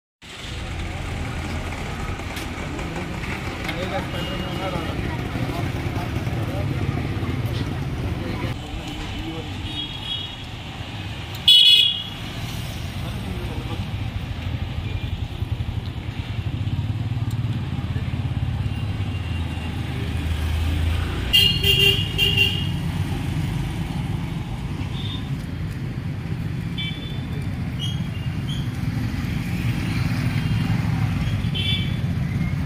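Street ambience of traffic running past a roadside market, with indistinct voices. A vehicle horn gives one loud short toot about a third of the way in, and a few short horn beeps come again after the two-thirds mark.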